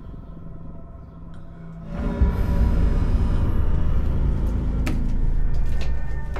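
Horror-film score drone: a low, quiet hum that swells into a loud, deep rumble with sustained tones about two seconds in, with a sharp click near the end.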